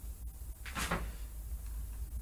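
Quiet pause in a voice recording: a steady low hum with faint noise, and one brief faint sound a little under a second in.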